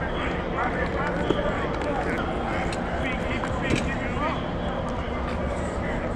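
Indistinct shouts and voices of players and coaches at a football practice over a steady background hum, with two sharp knocks, about a second in and again near the middle.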